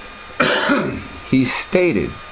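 A person clears their throat about half a second in, followed by a few short, indistinct voice sounds.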